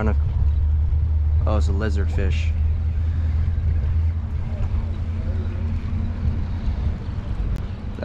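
A boat engine's low, steady drone that weakens after about four seconds and dies away near the end, with a few spoken words about two seconds in.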